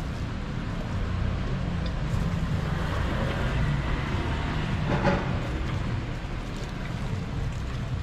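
Steady low rumble of outdoor street-stall ambience, with a few faint clicks and a brief clatter about five seconds in.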